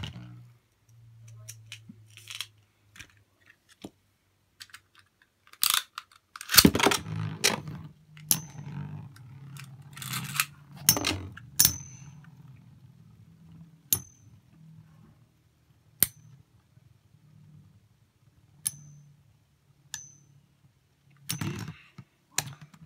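Metal-wheel Beyblade spinning tops whirring in a plastic stadium with a low steady hum. A loud clatter comes about six and a half seconds in as a second top joins the first, then the tops clash again and again with sharp metallic pings every couple of seconds until the battle winds down near the end.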